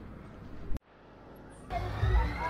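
Steady fairground background noise, broken by a sharp click and a brief dropout about three quarters of a second in. Near the end, loud fairground music with a pounding bass beat cuts in.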